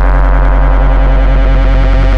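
Electronic dance track in a breakdown: a loud held synthesizer chord over a deep sustained bass tone, with no drums and the high end cut away.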